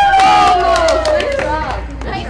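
A group of young girls cheering together in one long, drawn-out shout that falls in pitch, with a few claps in the first second, reacting to a putted golf ball rolling across the turf.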